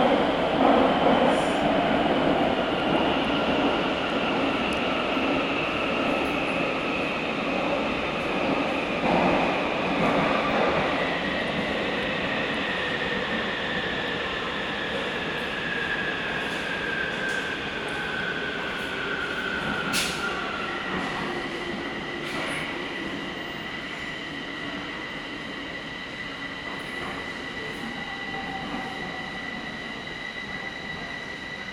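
Inside a metro car as the train slows: a steady rolling rumble with a whine that slides slowly down in pitch as it brakes into a station. A single sharp click comes about twenty seconds in, after which a steady high tone holds.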